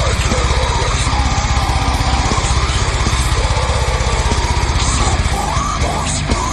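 Slam metal: heavily distorted, down-tuned guitars and bass over very fast double-kick drumming. The drum pattern changes near the end.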